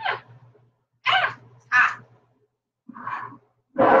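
A woman's short wordless exclamations: two quick gasp-like cries about a second in and a third, softer one near the end.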